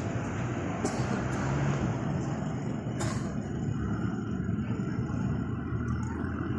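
Steady low rumble of background noise, with two short sharp clicks, about one second in and about three seconds in.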